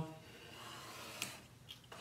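Faint handling sounds of mat board being positioned against the rail of a straight-line mat cutter: a soft rustle over the first second, then a light click, and two fainter ticks near the end.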